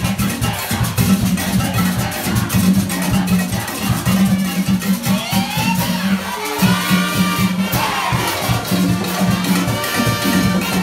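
Comparsa music with a fast, steady drum and percussion rhythm, and shouting voices rising and falling over it about halfway through.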